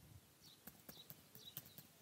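Faint computer keyboard keystrokes: a quick, irregular run of soft clicks as a word is typed.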